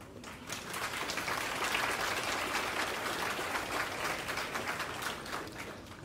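Audience applauding, swelling up about half a second in and dying away near the end.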